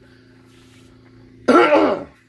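A man clears his throat once, loudly and briefly, about a second and a half in, over a faint steady hum.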